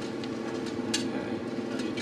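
Steady low hum of room background noise, with a single sharp click about a second in.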